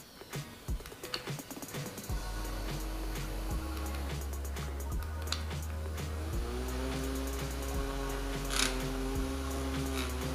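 Small handheld USB fan running, its motor and airflow giving a steady low rumble that starts about two seconds in, under faint background music.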